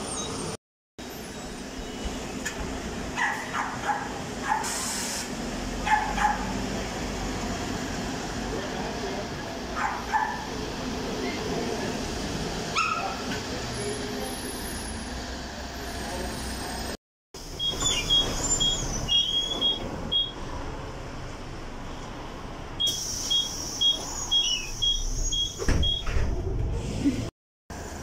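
City buses running at a stop in street noise, with scattered voices and a brief hiss of air about five seconds in. After a cut, a high electronic beep sounds in quick repeated runs.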